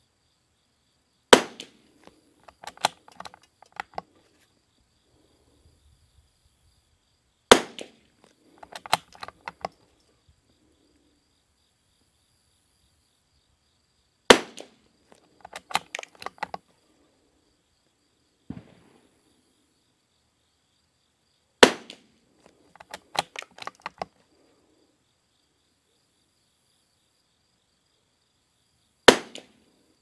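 Five .22 rimfire shots from a bolt-action CZ 455 Varmint rifle fitted with a Harrell barrel tuner, about seven seconds apart. Each shot is followed within a couple of seconds by a short run of clicks as the bolt is worked to eject and chamber the next round.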